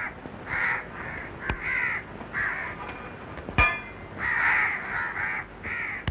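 Harsh bird calls repeated about eight times, some in pairs, with two sharp clicks, one about a second and a half in and one past the middle.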